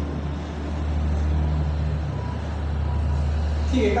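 A steady low hum with an even background noise. There is no distinct event, and it holds level throughout.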